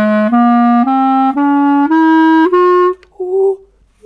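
Five-key clarinet played as a rising stepwise scale from its lowest note, with all fingers down at the start. Six notes of about half a second each are followed by a short, quieter note near the end. The scale breaks off where the instrument has no key for the next note up, so a note is missing.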